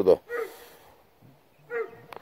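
Two short, high-pitched animal calls, one near the start and one near the end, with quiet between.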